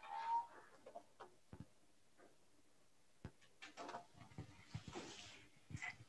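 Faint room sound of a microphone being handled and switched on: a brief rising chirp at the start, then a few sharp, isolated clicks and faint scattered noises.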